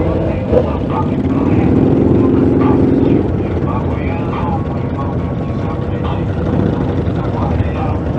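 Several motorcycle engines running in slow stop-and-go traffic, a dense low rumble. One engine's note comes through louder for about a second and a half, near the start.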